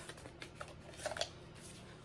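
Faint rustling and a few light clicks as a travel Yahtzee game's paper scorecard pad and small container are handled.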